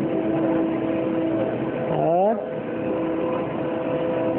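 A steady hum made of several held tones, with a short rising, pitched sound about two seconds in.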